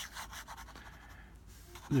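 Nib of a vintage Sheaffer Lifetime fountain pen scratching across paper in quick looping scribbles, a steady dry rasp that swells and fades with each stroke.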